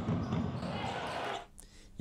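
Basketball game sound in a sports hall: a ball bouncing and players' voices, echoing in the hall. It cuts out about a second and a half in.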